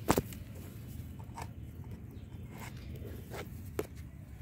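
A sharp click right at the start, then four or five fainter clicks and scrapes over a steady low rumble.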